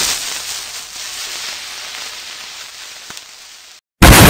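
A sizzling hiss, loudest at first and slowly fading, cut off abruptly just before the end.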